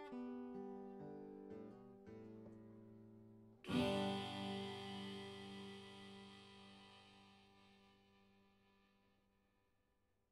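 Guitar playing the closing bars of a song: a few separate picked notes, then a final chord about four seconds in that rings out and slowly fades away.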